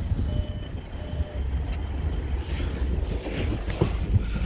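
Electronic warning beeps: about three short, evenly spaced beeps that stop about a second and a half in, over a low rumble.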